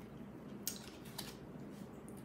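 Faint paper rustles of tarot cards being handled and drawn from the deck, with two brief swishes, the first about two thirds of a second in and the second just over a second in.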